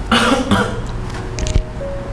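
Slow background music with held notes. Just after the start, a person coughs once, a short noisy burst of about half a second.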